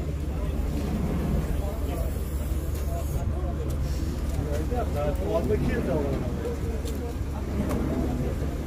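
Indistinct voices of several people talking nearby, loudest around the middle, over a steady low rumble.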